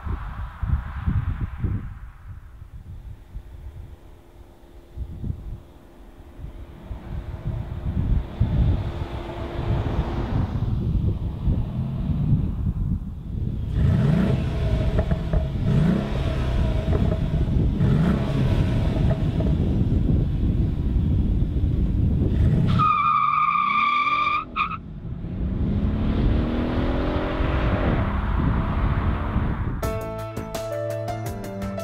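Mercedes-Benz SL500's 4.7-litre V8 being driven past and accelerating: quieter at first, then louder with revs rising several times in a row through gear changes. Later comes a brief high squeal, then the revs climb again.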